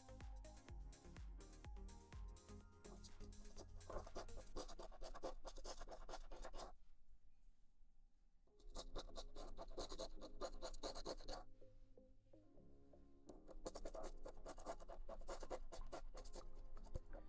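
A large metal coin scratching the coating off a paper scratch-off lottery ticket in rapid strokes, in three bursts with short pauses between them.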